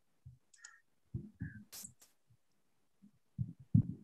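Scattered soft low thumps and a few short clicks on an open call line, with one brief hiss about two seconds in and a cluster of louder thumps near the end.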